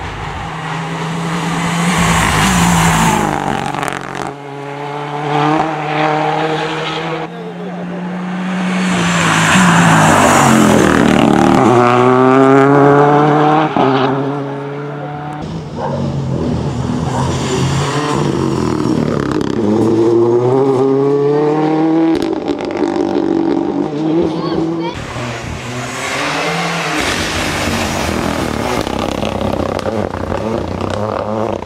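Renault Clio rally car driven hard through a tarmac rally stage, heard over several passes. The engine note climbs again and again through the gears, dropping at each shift, with tyre noise.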